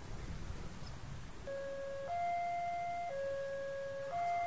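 Electronic level-crossing warning alarm sounding a repeating two-tone pattern, a lower tone and a higher tone alternating about once a second, signalling an approaching train. It begins about a second and a half in, after a low rumble of traffic.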